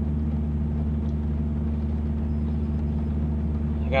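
Truck engine idling: a steady low hum that does not change.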